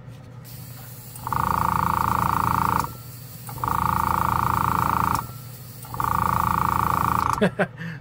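Small airbrush air compressor running with a steady low hum, its noise swelling three times into loud bursts of about a second and a half each.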